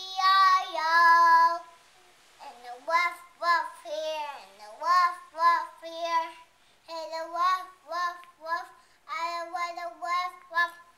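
A young child singing a tune in short notes, about two a second, after two long held notes at the start and a brief pause, with one note sliding down partway through.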